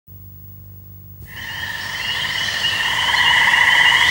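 A faint low hum, then a little over a second in a high, warbling trill begins and swells steadily louder.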